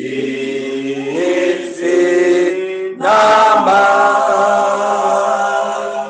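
Church singing: a group of voices singing a slow hymn in long held notes, with a brief break about three seconds in.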